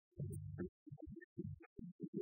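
A live band's music on a low-fidelity cassette recording. The sound is thin and low-pitched, and it breaks into short choppy dropouts.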